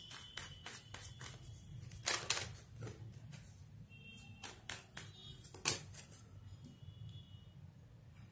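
A deck of tarot cards being shuffled by hand: an irregular run of quick card clicks and soft slaps, the loudest about two seconds in and again just before six seconds.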